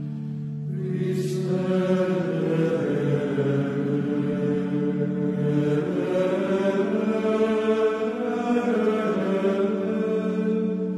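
Gregorian-style chant: voices holding a low sustained drone, with a new sung phrase entering about a second in and moving in pitch above it.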